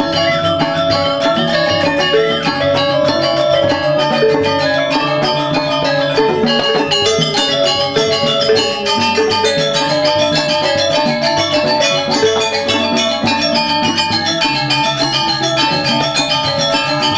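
Balinese gong gamelan playing: bronze metallophones and a row of kettle gongs struck with mallets in a fast, dense stream of ringing notes over a lower sustained gong tone, at an even loudness.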